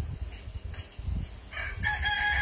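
A rooster crowing: one long, held call that begins about three-quarters of the way in, over a low rumble.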